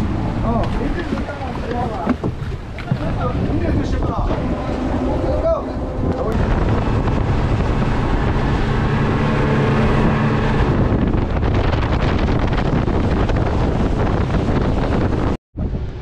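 Twin Honda outboard motors running at speed on a planing speedboat, a steady engine drone under rushing water and wind buffeting the microphone. The sound cuts off abruptly shortly before the end.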